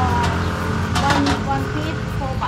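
Road traffic: a motor vehicle engine runs with a steady low hum throughout, with brief snatches of talk over it.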